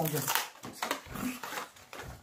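A woman's voice drawing out the end of a word with a falling pitch, then short soft sounds.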